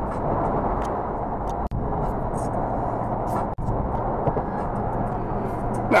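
Steady road and wind noise inside a car cabin while cruising at highway speed, cutting out for an instant twice.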